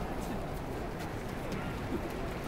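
Open-air stadium ambience in a pause of a speech over the public-address system: a steady background of crowd and outdoor noise, with no clear single event.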